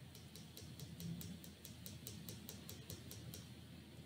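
A quick, even run of faint high ticks, about five a second, that stops after about three seconds, over low room noise.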